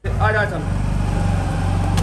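Honda Activa scooter's single-cylinder engine running steadily at idle, coming in suddenly at full level.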